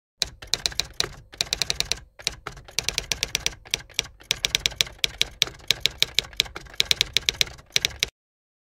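Typewriter typing sound effect: quick runs of sharp key strikes, about ten a second, broken by brief pauses, cutting off suddenly at the end.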